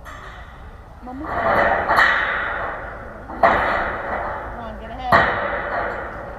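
Spectators at a baseball game cheering and shouting in three swells. The first builds about a second in; the second and third start suddenly and fade away.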